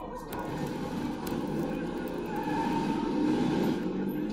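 A film soundtrack playing through a TV's speakers and picked up across a room: a dense mix of voices and a vehicle-like rumble that grows louder near the end.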